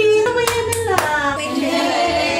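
Background song with a singing voice, broken by a few sharp clicks in the first second.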